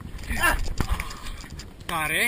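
A man crying out loudly as a horse nips at his hand, two cries, the second with a wavering pitch near the end, over wind and handling rumble on a helmet camera's microphone.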